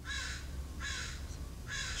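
A crow cawing three times, evenly spaced, each caw harsh and short.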